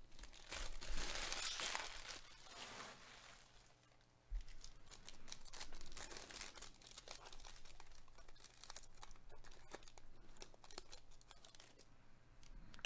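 A foil trading-card pack being torn open by gloved hands, its wrapper crinkling and tearing. The rustle is densest in the first few seconds, pauses briefly, then goes on as many small crackles as the foil is peeled away.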